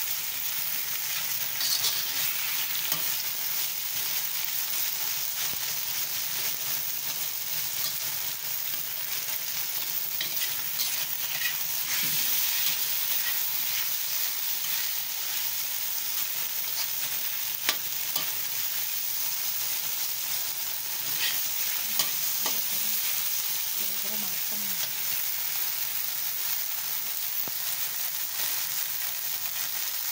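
Chicken strips and sliced onion sizzling steadily in oil in a wok, stirred and scraped with a metal spatula, with a few sharp clicks of the spatula against the pan.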